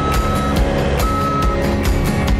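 Background music with a steady beat, over which a Cat 289D compact track loader's reversing alarm gives two steady single-pitch beeps about a second apart.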